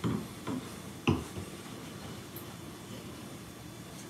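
Wine being sniffed and sipped from glasses: three brief soft sounds in the first second or so, then quiet room tone.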